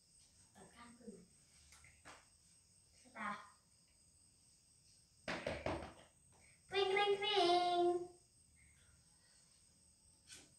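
Brief snatches of family voices, a child's among them, with a louder, drawn-out voiced sound about seven seconds in; under them runs a faint, steady high chirring of crickets.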